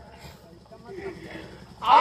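A short lull in the stage dialogue with only faint background sound, then near the end a performer's loud, drawn-out voice comes in over the stage microphones.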